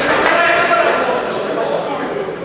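Spectators at a boxing bout shouting and talking over one another, many voices at once, echoing in a large hall.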